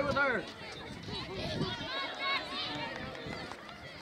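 Several voices shouting and calling out across a soccer field from players and sideline spectators during play, with the loudest shout right at the start.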